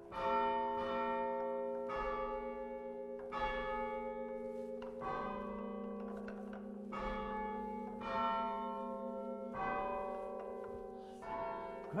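Cathedral tower bells chimed from a hand-operated chiming frame: hammers strike the stationary bells one note at a time, playing a slow tune. There are about eight notes, unevenly spaced, and each rings on under the next.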